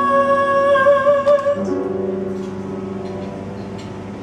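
A woman's voice holds a long sung note with slight vibrato over grand piano, ending about one and a half seconds in. A new piano chord then rings and slowly fades.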